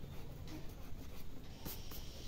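Faint scratching and rustling of a pencil and hand moving over a paper textbook page, with a couple of light taps near the end.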